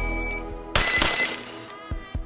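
A carbine shot and a steel plate ringing about three-quarters of a second in, the ring dying away over about a second, over background music.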